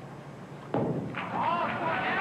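A bowling ball landing on the lane at release with a single sharp thud about three-quarters of a second in, then rolling down the lane. Raised voices call out over the roll.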